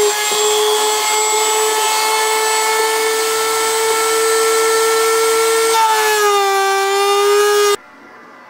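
Corded Dremel rotary tool running at high speed, cutting an access hole through a fiberglass patch panel and rusty floor pan to reach a body-mount cage nut: a steady high whine over a gritty hiss. The pitch drops a little about six seconds in, and the tool cuts off shortly before the end.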